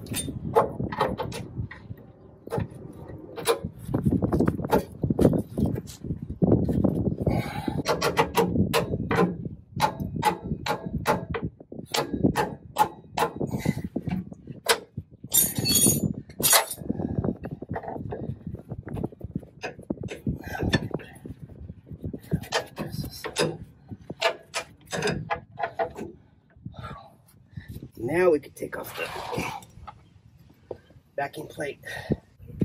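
Hand wrench and steel brake hardware clicking, clinking and knocking in many short, irregular strikes as the brake line and drum-brake backing plate are worked loose, with indistinct muttering underneath.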